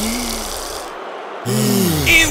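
Cartoon snoring by a voice actor: two snores, each with a hissy breath, the second starting about halfway through.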